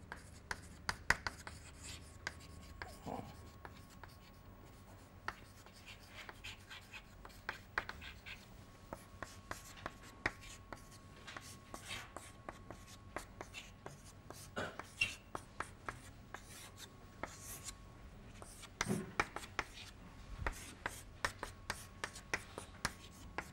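Chalk writing on a chalkboard: a faint, irregular run of quick taps and short scratchy strokes as words and an equation are chalked up.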